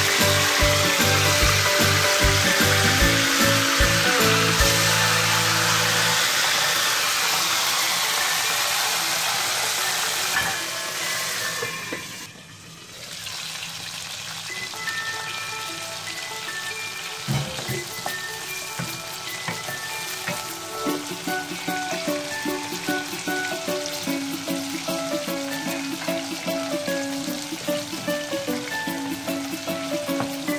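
Okra pieces sizzling as they fry in hot oil in a wok. The sizzle is loudest in the first dozen seconds, drops out briefly near the middle, then carries on more softly under background music.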